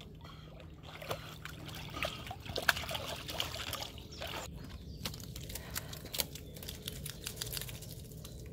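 Water splashing and trickling as a wet Lagotto Romagnolo dog climbs out of a lake onto a wooden dock, with water running off its curly coat. Many light clicks and taps are scattered throughout.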